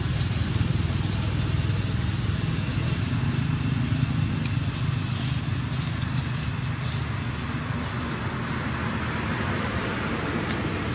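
Steady low background rumble with no clear source, broken by a few brief, faint high-pitched hisses.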